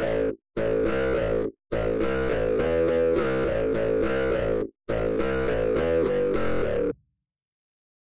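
A polyphonic instrumental loop played back in Melodyne after its notes were snapped to the A minor scale, with a few notes still in the wrong key. It plays in four stretches, stopping and restarting with short dead silences, and stops about seven seconds in.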